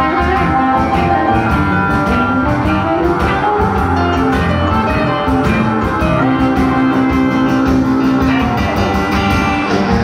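Live band playing an instrumental break: a Telecaster electric guitar takes the lead over stage piano and a steady drum-kit beat.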